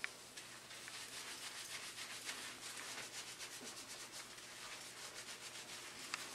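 Fingers scrubbing shampoo-lathered hair: a faint, rapid, scratchy rubbing.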